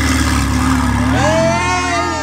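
Engine of a red Ferrari sports car running with a deep, steady note, while a voice shouts over it about a second in.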